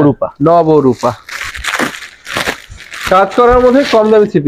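Clear plastic packaging crinkling as a wrapped three-piece dress set is handled and a garment is drawn out of its plastic bag, a rustle lasting about two seconds in the middle.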